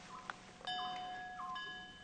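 Soft background music of chime-like tones. A bell-like note struck about two-thirds of a second in rings on with its overtones, slowly fading, over a short higher chime note that recurs about once a second.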